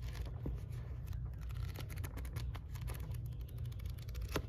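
Pages of a paperback book being flipped through by hand: a quick run of soft paper flicks, densest in the middle.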